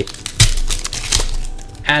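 Foil wrapper of a Pokémon card booster pack crinkling and tearing as it is opened by hand and the cards are slid out, with a sharp crack about half a second in.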